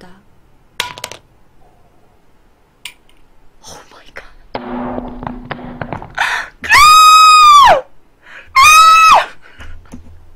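A woman squeals loudly twice in a very high pitch, first for about a second and then for about half a second, each cry rising and then dropping away at the end. A faint click comes about a second in, and breathy noise comes just before the squeals.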